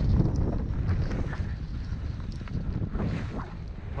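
Wind buffeting a ski-pole-mounted camera's microphone during a downhill ski run, a steady low rumble, with skis sliding over soft fresh snow rather than scraping on ice.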